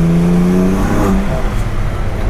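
Car engine pulling under acceleration, heard from inside the cabin, its note climbing slowly in pitch, then breaking and changing about a second in.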